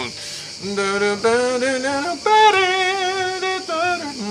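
A man singing a few wordless held notes that step up and down in pitch, sketching a blues line from the one chord down to the four.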